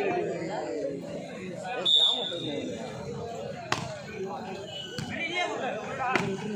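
A referee's whistle gives one short steady blast about two seconds in, over the chatter of players and onlookers. About two seconds later comes a single sharp smack of a hand striking the volleyball, and a fainter hit follows near the end.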